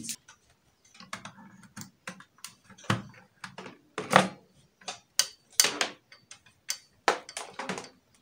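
Irregular plastic clicks and knocks as a laptop charger's plug is pushed into a socket on an extension box and the charger's power brick and cable are handled.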